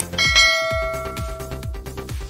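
A bright bell chime, the notification-bell sound effect of a subscribe animation, rings out about a quarter second in and fades away over about a second and a half. Under it runs electronic background music with a steady kick-drum beat.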